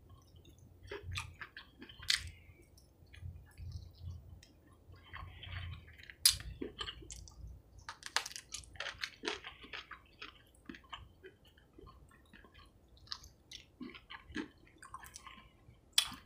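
A person eating fried chicken by hand close to the microphone: quiet chewing with scattered small clicks and crunches, a little sharper about six and eight seconds in.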